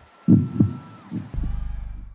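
Heartbeat sound effect: two low double thumps, lub-dub, about a second apart, the second running into a low rumble that fades out. A faint thin high tone sounds underneath and drops away about halfway through.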